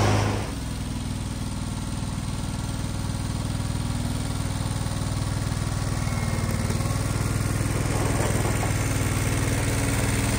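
John Deere 425 garden tractor's liquid-cooled V-twin engine running as the tractor drives. The sound drops suddenly about half a second in, then holds a steady engine note that slowly grows louder as the tractor comes closer.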